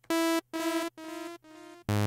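Sawtooth synth note from Arturia Pigments' analog engine played through its pitch-shifting delay: a short bright note followed by about three echoes of the same pitch, roughly half a second apart, each quieter than the last. Near the end a new, louder and lower note is struck.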